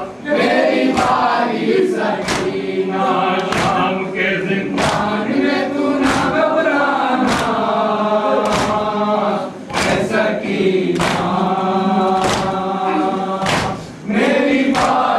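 A crowd of mourners chanting a noha lament in chorus. A sharp strike comes about every second and a quarter and keeps the beat: matam, the mourners striking their chests.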